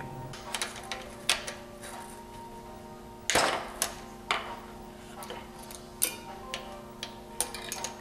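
Hex wrench and box-end wrench clicking against the tie rod bolt and nut of a recumbent trike's steering as the bolt is undone: several scattered metallic clicks, the loudest about three seconds in, over a steady hum.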